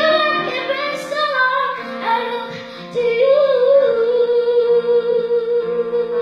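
A young boy singing a slow ballad into a microphone over piano accompaniment, holding one long note from about three seconds in.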